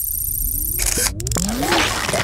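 Electronic sound effects for an animated logo sting. A low rumble runs under a high, repeating warble; about a second in come a few sharp clicks, then several rising sweeps.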